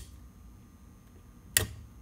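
A single sharp click about one and a half seconds in, from a hand working the knobs and switches of a radio receiver, over faint hiss.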